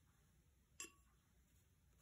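Near silence broken by a single light clink a little under a second in, with a brief ring: a paintbrush tapping against the watercolour palette while picking up paint.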